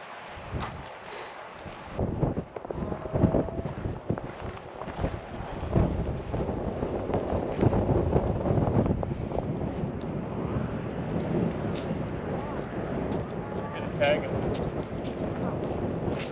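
Wind buffeting the microphone: a rough, rumbling noise that sets in about two seconds in and carries on, with a few scattered knocks.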